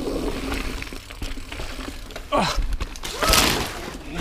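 Mountain bike rolling fast over rough trail and a wooden skinny: tyre noise and frame and drivetrain rattle, with a short falling vocal cry about two and a half seconds in and a loud hissing burst just after three seconds.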